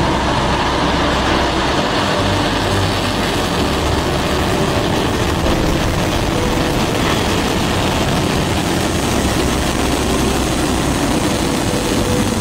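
Long March 2C rocket's first-stage engines at liftoff: loud, steady engine noise, deepest in the low end, as the rocket clears the pad and climbs.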